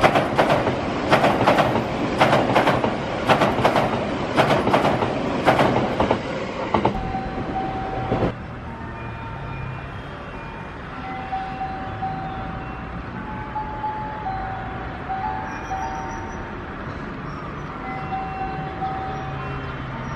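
Limited express Kuroshio electric train passing through the station at speed, its wheels beating over the rail joints in a quick, uneven series of clacks. The sound cuts off suddenly about eight seconds in, leaving a quieter steady background with faint held tones.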